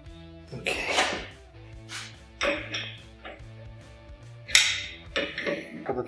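Background guitar music with a few sharp metallic clinks and scrapes of a steel fitting and spanner being handled at a bench vice, the loudest about a second in and again about four and a half seconds in.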